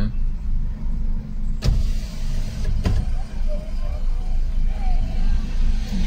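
A car's engine idling, heard from inside the cabin as a steady low rumble. Two sharp clicks come near the middle, a little over a second apart.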